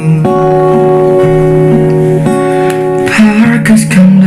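Acoustic guitar accompanying a sung song, the voice holding long notes that change pitch a couple of times.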